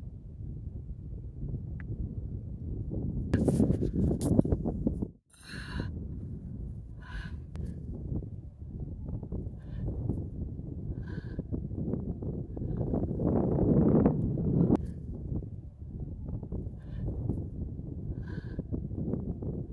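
Wind buffeting the microphone, briefly cutting out about five seconds in, with a bird giving short calls several times through the rest.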